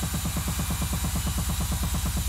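Techno DJ mix: a rapid roll of short hits, about a dozen a second, each falling in pitch, over a steady low bass.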